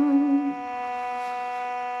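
Armenian duduk holding a long note that fades out about half a second in, leaving only a quieter steady drone underneath until the next phrase.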